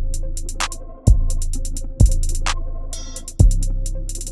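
Trap beat playing back: a fast, even hi-hat pattern from Logic Pro's Drummer (Trillionaire preset), long 808 kick-bass notes that hit and fade, a clap about once a bar, and a held synth melody. A quick hi-hat roll comes about three seconds in.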